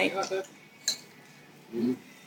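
A long spoon clinking once against a glass sundae dish, a single sharp click about a second in.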